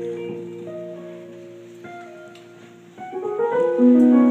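Keyboard accompaniment under a sermon: a held chord fades away over about three seconds, then a new chord comes in a little before the end.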